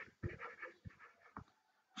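Quiet room tone with a few faint, short clicks scattered through the pause.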